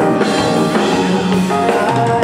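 Live band playing on stage: drum kit, keyboard and guitar together in a steady, full mix.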